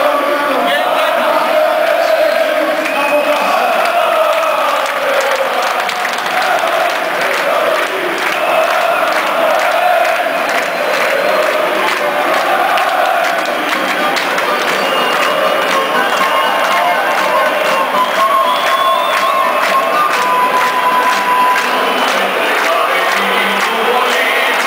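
A large football crowd singing and chanting together in a stadium, loud and sustained.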